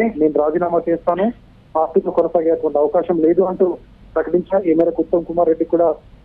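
Speech only: a Telugu news voice-over talking steadily, with two short pauses.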